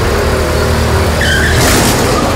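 Motorcycle engines running with a steady low note, and a brief high squeal about a second and a quarter in.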